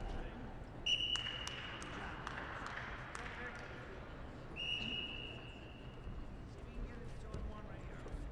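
Referee's whistle blown twice, each a single steady high blast of about a second: once about a second in, stopping the ground wrestling, and again around the middle. Short knocks of feet on the wrestling mat and low voices in the hall underneath.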